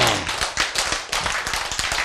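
Audience clapping, a dense run of quick hand claps.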